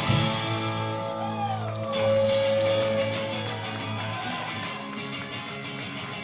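Live punk band's electric guitars and bass ringing on with sustained notes once the drums stop, including a bent note and then a bright held tone about two seconds in.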